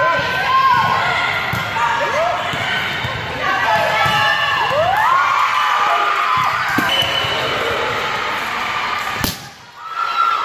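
Indoor volleyball rally in a gym hall: the ball is struck several times while players call out and shoes squeak on the court floor, all echoing in the large hall. A sharp knock comes near the end, followed by a moment of quiet.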